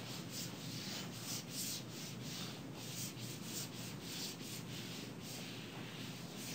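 Marker writing on a whiteboard: a run of short, scratchy strokes, several a second, with brief gaps between groups of strokes.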